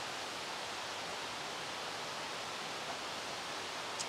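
Steady, even rushing of a brook running through a wooded gorge, with no distinct events.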